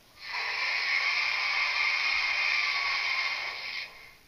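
A loud, steady hiss-like noise with no clear pitch. It starts a moment in, lasts about three and a half seconds, and stops just before the end.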